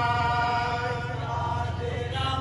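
Men's voices chanting a jari gan (Bengali folk ballad) melody together, drawing out long held notes.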